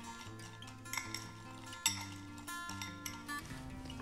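Quiet acoustic guitar background music, with a few light clinks of a spoon against a ceramic bowl as green beans are stirred, the sharpest about one and two seconds in.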